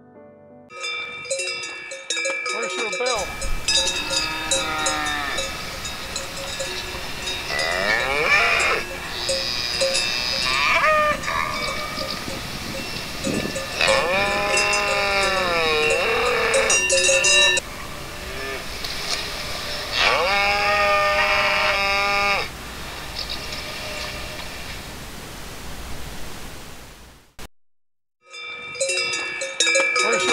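Cowbells on grazing cattle clanking and ringing, several bell tones sounding together. Three long, drawn-out calls from the animals rise over the bells. The sound cuts out briefly near the end, then the bells resume.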